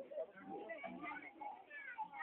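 Faint, distant human voices.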